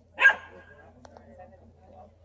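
A dog barking once, a single short loud bark about a quarter of a second in, with faint voices murmuring under it.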